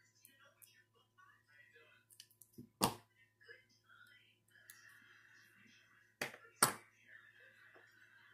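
Steel pliers and 14-gauge fence-wire rings clicking and tapping as a ring is twisted open for a 4-in-1 chainmail weave. There are faint ticks throughout and sharper clicks about three seconds in and twice more near the end.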